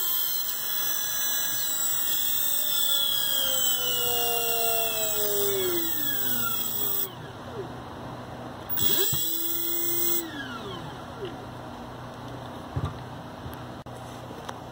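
A 2001 Ford alternator running as an electric motor on a brushless speed controller, with a high-speed whine and hiss. Its pitch falls as it slows, the sound drops off about seven seconds in, then it briefly spins up again around nine seconds and winds down.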